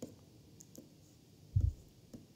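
A stylus pen tapping and clicking on a tablet screen while handwriting, a few light sharp clicks, with a dull low thump about one and a half seconds in.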